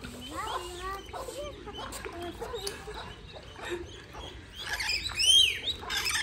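Small birds calling: a run of short chirping peeps, then louder, shrill arching calls near the end, from ducklings and lorikeets at a water tray.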